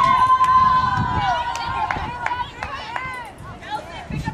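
Women's voices shouting and calling out during a soccer game, with one long held shout over the first two seconds, then shorter calls that die down in the second half. A few sharp knocks are heard among them.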